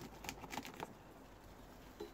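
Potato plant stems being cut off and gathered up: a quick run of clicks and rustling leaves in the first second, then quieter handling of the foliage.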